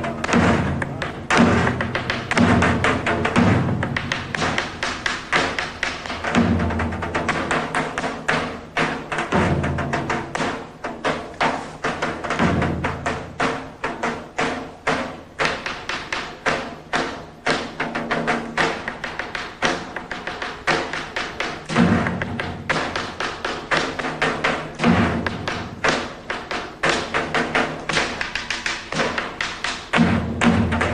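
Greek folk dance music: a daouli, the large double-headed drum, beats out the rhythm with deep bass strokes and quick, sharp stick taps under a clarinet melody. The deep strokes come in clusters every few seconds and thin out to lighter taps through the middle.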